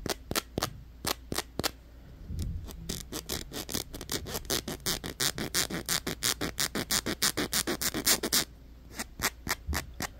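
Fingers scratching a small hook-and-loop (Velcro) patch in quick repeated strokes, slower at first and then about five a second, with a short pause near the end.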